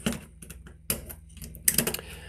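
Small plastic clicks and snaps as a screwdriver pries a snap-on plastic terminal cover off a motor contactor: one sharper click about a second in and a quick cluster of clicks near the end.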